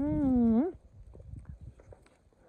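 A woman's long, drawn-out vocal sound, sliding up and then down in pitch for under a second, followed by faint rustling and soft ticks of a hand moving through raspberry canes.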